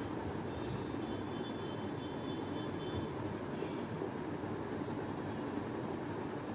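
A marker writing on a whiteboard, faint thin squeaks in the first half, over a steady background hum.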